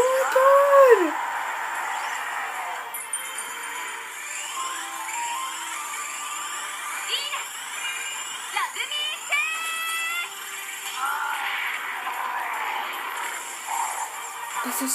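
Anime soundtrack playing through a phone's small speaker: music, sound effects and voices mixed together, thin with no bass. A brief high voice rises and falls right at the start.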